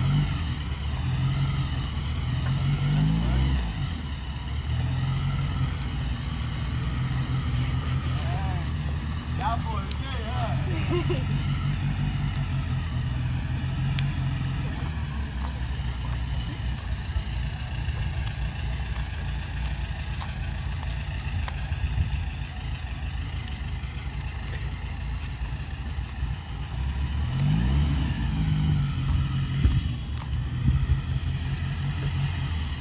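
Air-cooled flat-four engine of a classic Volkswagen Beetle running at low speed as the car creeps forward. The engine rises in pitch about three seconds in and again near the end.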